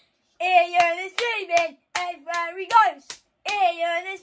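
A young man singing a chant in long held notes while clapping his hands along, about seven sharp claps.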